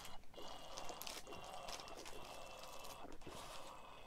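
A person taking a drink: faint liquid sounds with a few soft clicks.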